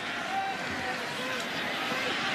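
Steady stadium crowd noise, an even murmur of many voices with no single loud event.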